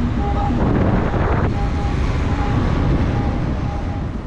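Wind buffeting a roof-mounted camera on a moving car, over tyre and road noise: a steady heavy low rumble, with a brief stronger gust about a second in.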